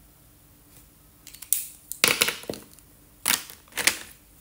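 Plastic felt-tip markers clicking and rattling as they are handled: a marker being capped or uncapped and markers knocking in their plastic tray. The sound comes in two bursts, the first about a second and a half in, the second near the end.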